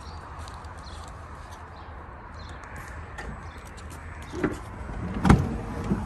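Dodge Grand Caravan front door being unlatched and swung open: a soft thump about four and a half seconds in, then a loud clunk of the latch about a second later, over a steady low rumble.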